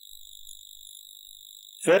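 Faint steady high-pitched electrical whine under a pause in speech, with one short spoken word near the end.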